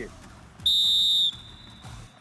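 Referee's whistle blown in one short, shrill blast of about two-thirds of a second, signalling the end of a kabaddi raid as the raider is tackled.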